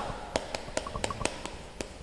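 Chalk tapping and scraping on a chalkboard as a word is written out stroke by stroke: a string of sharp, irregular clicks, several a second.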